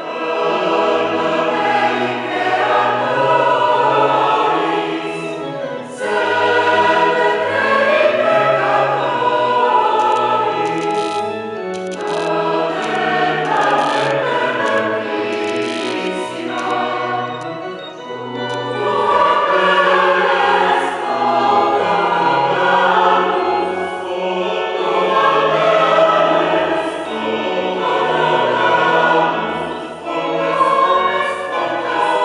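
Mixed choir of women's and men's voices singing together in sustained phrases, with brief dips between phrases roughly every six seconds.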